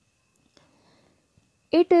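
Near silence: a pause in a narrating voice, with only faint room tone. Speech resumes near the end.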